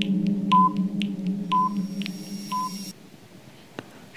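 Quiz countdown timer: three short electronic beeps about a second apart, with faint ticks between, over a low steady tone that stops about three seconds in.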